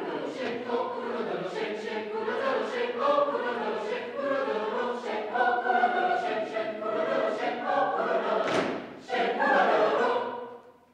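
Mixed-voice high school chamber choir singing a lively, rhythmic passage, with a brief break just before the end and then a loud closing chord.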